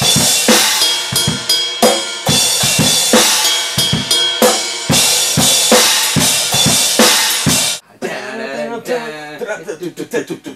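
Drum kit played hard: kick, snare and cymbals in a steady rhythm with a loud bell ringing over them, stopping abruptly about eight seconds in.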